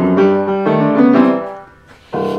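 Piano playing the introduction to a children's song: a run of chords and melody notes that fades away near the end.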